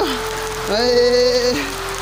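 Steady hiss of rain falling on the ground. In the middle, a voice holds one steady note for just under a second.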